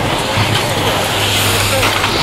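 Indistinct voices of people talking over a steady low hum and loud, even hiss.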